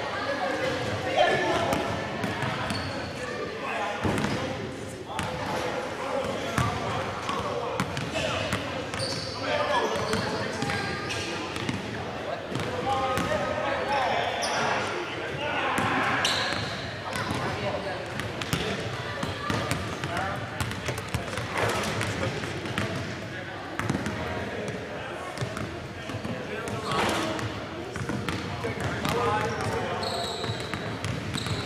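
Basketball bouncing on a hardwood gym floor at irregular moments, with indistinct voices talking throughout in a large gymnasium.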